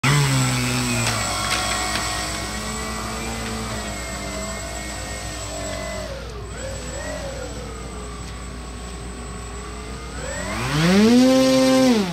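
Model airplane engine running with its pitch wandering up and down, then revving up steeply near the end to its loudest and holding there.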